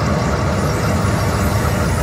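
Huff N' Even More Puff slot machine playing its blowing sound effect as the wolf blows down the houses: a steady rushing rumble.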